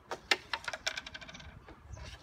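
Wooden carrom pieces clacking on a carrom board: a sharp clack, then a quickening run of small clicks that dies away about a second and a half in.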